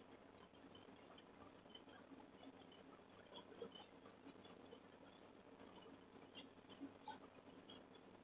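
Near silence: faint room tone with a steady thin high whine and scattered faint ticks.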